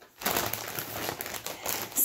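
Plastic bag of frozen seasoned curly fries crinkling as it is handled and picked up, a continuous crackly rustle.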